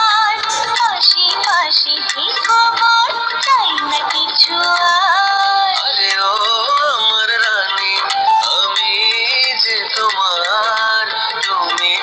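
A Bengali song playing: a wavering sung melody over musical backing, thin with almost no bass.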